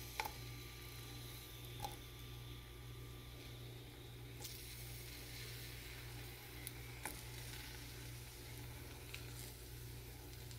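Raw shrimp frying in olive oil in a nonstick skillet: a faint, steady sizzle that fills out about four seconds in as more shrimp go into the pan. A few sharp clicks and taps come as shrimp are set down in the pan.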